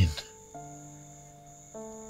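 Soft background film score of held chords that shift twice, over a steady high trill of crickets.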